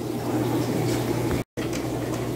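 Steady hum and hiss of aquarium air pumps and bubbling air stones, with a low constant hum. The sound drops out completely for an instant about one and a half seconds in.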